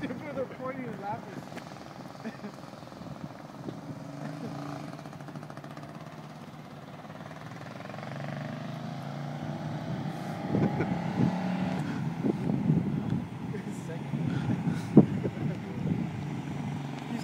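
The small engine of a Porsche 936 Junior go-kart runs steadily at a distance, growing louder in the second half as the kart comes back toward the listener. There is a sharp knock about 15 seconds in.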